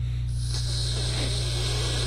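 Aerosol spray hissing continuously, starting about a third of a second in, over a steady low electrical hum.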